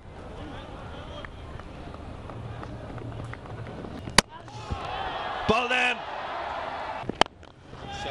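Stadium crowd noise under a cricket broadcast, with a sharp crack of bat on ball about four seconds in, after which the crowd noise swells; another sharp click comes near the end.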